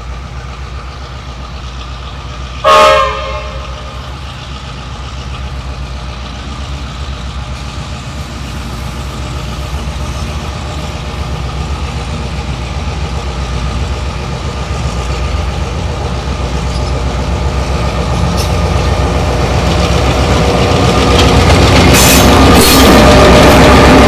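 Victorian Railways T-class diesel locomotive T411 pulling away with a train of vintage coaches. Its diesel engine throbs steadily and grows gradually louder as it approaches and passes. One short horn blast sounds about three seconds in.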